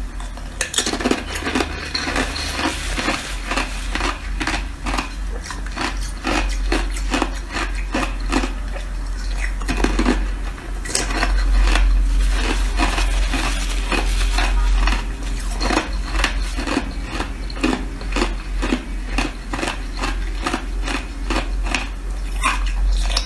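Frozen ice being bitten and chewed close to the microphone: a rapid, uneven run of sharp crunches and cracks, with a steady low hum underneath.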